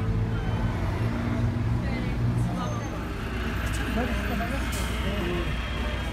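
A steady low hum of a motor vehicle's engine running, with faint voices in the background.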